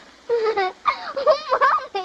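A little girl's excited, high-pitched voice: short exclamations that rise and fall in pitch, starting a moment in.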